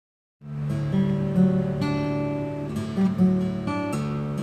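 1973 Seagull SD-70 steel-string acoustic guitar, made by M. Shiozaki, being fingerpicked: ringing bass notes under a line of plucked treble notes, starting about half a second in.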